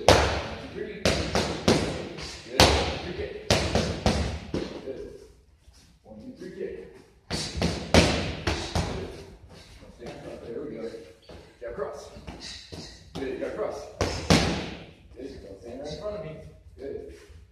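Boxing-gloved punches smacking into leather focus mitts in quick combinations of two to four strikes, with short pauses between the combinations. Each strike echoes in a large hall.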